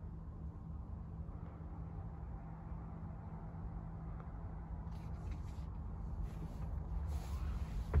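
Faint steady low hum inside a truck sleeper cab, with soft rustling and scuffing of the camera being moved about in the second half.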